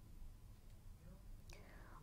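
Near silence: faint low background noise, with one brief faint falling sweep about one and a half seconds in.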